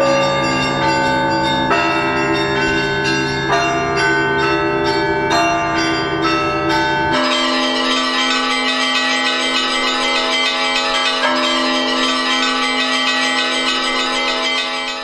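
Russian Orthodox church bells ringing a festive peal: many bells sounding together, with new strikes about once a second. About seven seconds in it cuts to another belfry's bells, higher and more densely rung.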